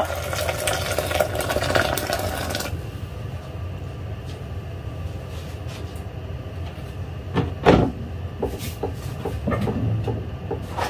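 Kitchen tap running, stopping about three seconds in. Then a low steady hum with a few knocks and clatters, the loudest a little after seven seconds.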